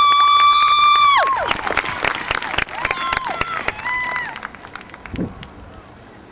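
Crowd in the stands cheering for the band: one long high-pitched whoop held for about a second, then scattered shouts and claps that die away by about five seconds in.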